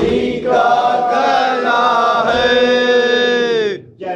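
Men's voices chanting a Shia noha (Muharram mourning lament) together, the words drawn out into long held notes; the last long note breaks off shortly before the end.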